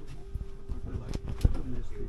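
Cabin of a small airliner with a steady low hum, passengers' muffled voices, and a few knocks and thuds. The loudest thud comes about one and a half seconds in.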